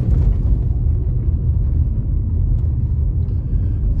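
Steady low rumble of road and engine noise from a moving car, heard from inside its cabin.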